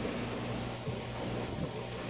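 Steady low hum with an even hiss from a fish room's running aquarium filters and pumps.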